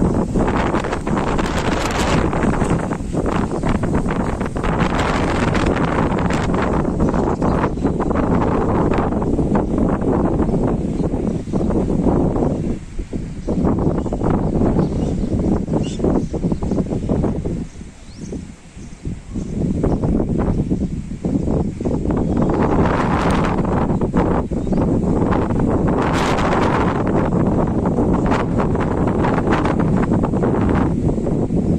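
Strong, gusty cyclone wind buffeting the microphone, with trees and leaves rustling. The wind eases briefly twice, about halfway through and again a few seconds later, then picks up again.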